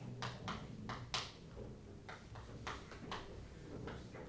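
Chalk tapping and scratching on a chalkboard as lines are written: a string of short, irregular taps, about ten in all, the loudest about a second in.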